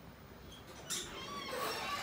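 Metal apartment front door being swung open, with thin, wavering high squeaks starting about a second in.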